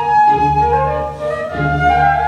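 Two concert flutes playing a melody in long held notes over a string orchestra accompaniment, with low strings swelling in and out beneath them.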